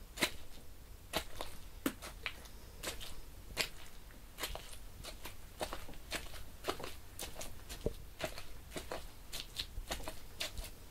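A hanging raw pig carcass being struck by hand: a run of irregular sharp slaps and thuds on the meat, about one a second.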